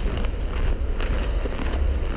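Wind buffeting a handheld camera's microphone: a steady low rumble, with a few faint footsteps in snow.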